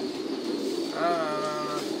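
Many caged domestic pigeons cooing together in a loft, a steady low chorus, with a man's short spoken "à" a second in.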